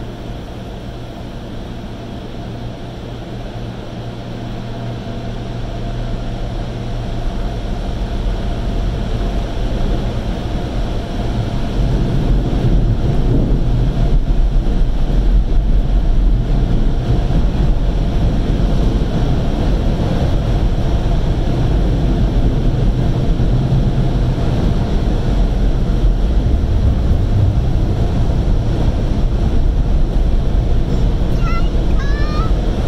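Automatic car wash machinery running: a steady, low rumbling rush of noise that grows louder over the first ten seconds or so and then holds.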